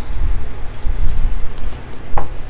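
A loud low rumble with a steady hum under it, and a few faint taps as tarot cards are handled on a tabletop.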